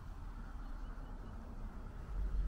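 Quiet outdoor background noise: a low, uneven rumble with a faint hiss and no distinct event.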